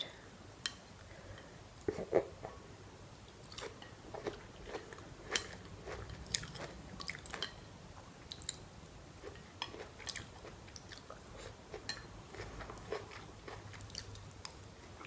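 Close-up chewing and biting of a mouthful of salmon and noodles: soft wet smacks and small crunches scattered irregularly, the loudest about two seconds in.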